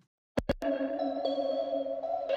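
Lo-fi synthesizer pad from Omnisphere's Unclean Machine library, worn and cassette-like, starting after a few short clicks and holding a sustained chord whose upper notes shift about a second in.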